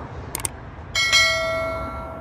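Two quick computer-mouse clicks, then a bell notification chime struck about a second in that rings and fades over about a second: the sound effect of a subscribe-and-notification-bell overlay.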